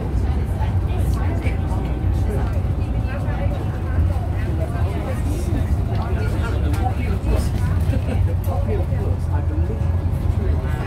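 Diesel engine of an Eastern Coach Works Bristol VR double-decker bus running steadily under way, heard from inside the upper deck as a low drone. Passengers' voices talk over it.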